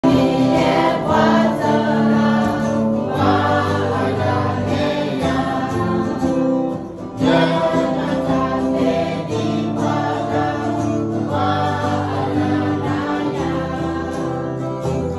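A group singing a Karen-language song together to guitar accompaniment, in phrases of about four seconds with short breaks between them.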